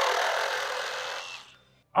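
Hilti Nuron cordless reciprocating saw cutting through a clamped metal pipe: a steady sawing noise that dies away about one and a half seconds in. The saw cuts through very quickly.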